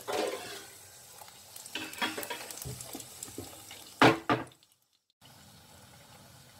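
A puri deep-frying in hot oil in a kadai, sizzling and crackling as it is pressed down with a wire spider strainer to make it puff. About four seconds in come two loud short bursts, then the sound cuts out for about half a second before the sizzle returns.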